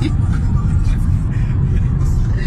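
Steady low rumble of a moving car's road and wind noise, heard from inside the cabin.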